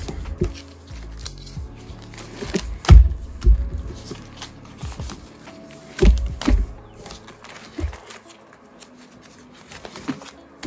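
Plastic pocket pages of a ring binder being handled and turned, giving sharp rustles and taps, the loudest about three and six seconds in. Soft lo-fi hip hop music plays underneath.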